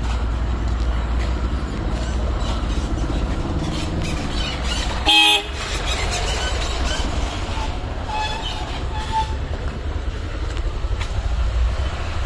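A vehicle horn honks once, briefly and loudly, about five seconds in, over a steady low rumble of street background.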